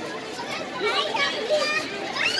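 Children's voices calling and chattering as they play, several high voices overlapping over a background babble.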